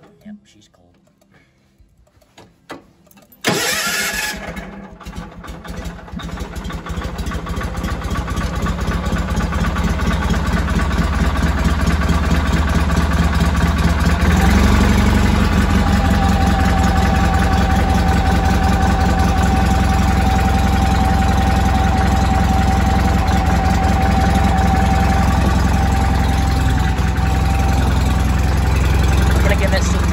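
John Deere 318 garden tractor's Onan flat-twin engine cold-starting on choke. After a short quiet pause it cranks and catches about three and a half seconds in, runs unevenly at first, then settles into a steady run. Its note changes about fourteen seconds in, and a thin steady whine joins it for a while as it warms up.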